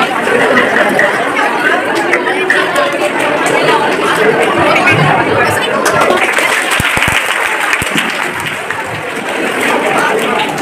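Many people chattering at once in a large hall, a dense murmur of overlapping voices, with a few short low thumps about seven seconds in.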